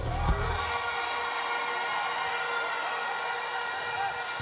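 Music over a sound system: the low beat stops about half a second in, leaving a long held chord of many steady tones.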